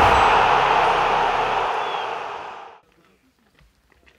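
Intro logo sound effect: a loud hiss of TV-style static with a deep rumble under it, fading out a little under three seconds in. Faint outdoor sounds follow.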